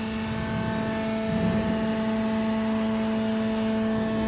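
C purlin roll forming machine running: a steady mechanical drone with a constant hum from its drive.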